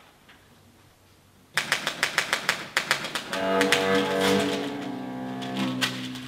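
Manual typewriter keys struck in a quick run starting about a second and a half in. About three seconds in, music with sustained string tones comes in over further clicking.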